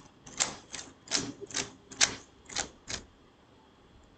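Keystrokes on a computer keyboard: about ten irregular taps over the first three seconds, then the typing stops.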